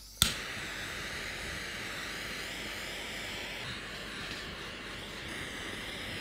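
A sharp click, then a steady airy hiss from a handheld heat tool played over a square metal cake ring, warming the ring to loosen the set chocolate mousse.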